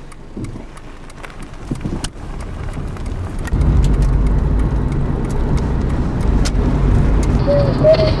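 Car cabin noise from a car driving a country road: a low steady rumble of engine and tyres that grows louder about three and a half seconds in, with scattered light clicks. Near the end a thin voice, as from a radio, comes in.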